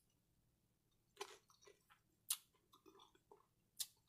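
Faint close-miked chewing of a mouthful of chicken tortilla soup: scattered wet mouth clicks and smacks, starting about a second in.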